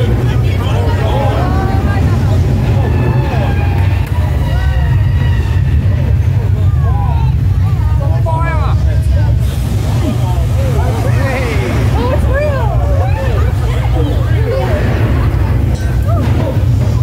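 Loud, steady low rumble of a staged earthquake special effect in a subway-station set, heard from the studio-tour tram, with riders' voices and exclamations over it.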